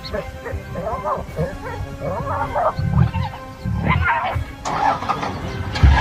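Background music with excited human voices calling out over it, and a few heavy low thumps.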